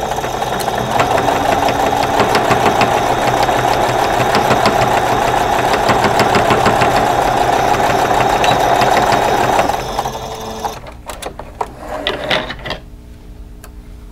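Singer electric sewing machine stitching steadily through the pleated layers of a cotton face mask, stopping about ten seconds in. A few clicks follow after it stops.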